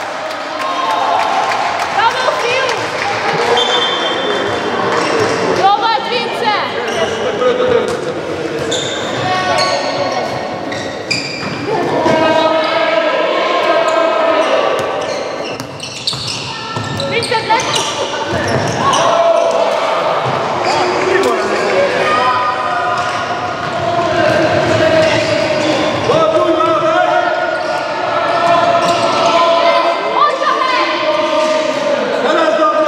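A handball bouncing on a wooden sports-hall floor during play, repeated knocks throughout, mixed with the voices of players and people on the sideline.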